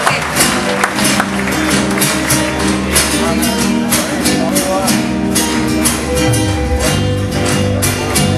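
Live folk band playing a zamba: acoustic guitar with electric bass, electric guitar and drums, the percussion marking a steady beat of sharp hits.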